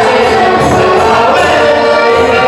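Dance music from a Polish courtyard band (kapela podwórkowa), with several voices singing together, loud and steady.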